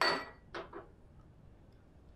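A sharp clink of kitchenware being set down, ringing briefly, followed about half a second later by a softer knock.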